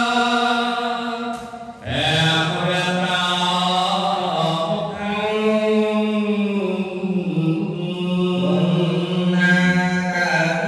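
A man's voice chanting a Khmer Buddhist recitation over a microphone, in long held notes on a steady pitch, with a short break for breath about two seconds in.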